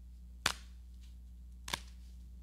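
A large communion wafer being broken by hand at the fraction, giving two sharp cracks about a second and a quarter apart, the first louder.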